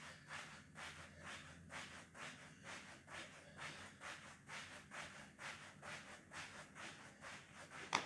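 Faint, even patter of a person doing jumping jacks: soft footfalls on a thin exercise mat over artificial turf, about two to three a second, stopping just before the end.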